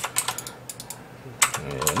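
Computer keyboard keys typed in short quick clusters: a few keystrokes at the start, a couple more around the middle, and a louder group about one and a half seconds in. These are keyboard commands being entered in AutoCAD.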